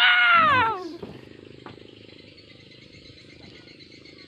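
A comedic meme sound clip edited in: a man's voice in one drawn-out cry, about a second long, that rises and then falls in pitch. Faint steady insect chirring fills the rest.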